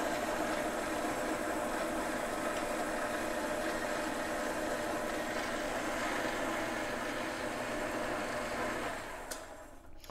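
Ellis 1600 band saw running: its 1 hp motor and blade give a steady hum while the head lowers on its hydraulic down feed. About nine seconds in, the automatic shutoff trips at the bottom of the stroke and the motor winds down.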